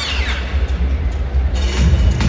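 Arena PA playing a bass-heavy transition effect: a falling swoosh right at the start, then deep low rumble, with a beat coming in about a second and a half in.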